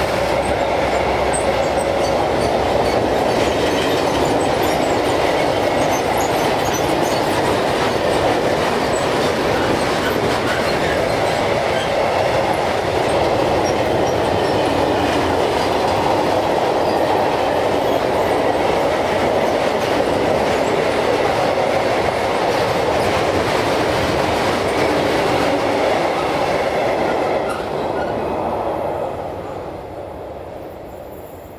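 Freight train of covered sliding-wall wagons rolling past, a steady noise of steel wheels on the rails. It begins to fade a couple of seconds before the end as the last wagons go by.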